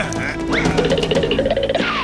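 Cartoon background music with comic sound effects: a quick rising glide about half a second in, then a wavering, warbling tone through the middle and a falling glide near the end.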